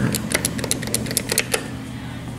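Dover elevator hall call button being pressed rapidly, a quick run of about a dozen sharp clicks over a second and a half, with a steady low hum underneath.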